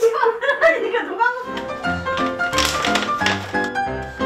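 A man's voice speaks briefly, then background music with a bouncy, regular bass line and melody notes.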